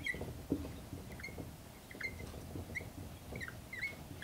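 Dry-erase marker squeaking against a whiteboard while writing: about ten short, faint squeaks at an uneven pace, with light taps of the marker tip.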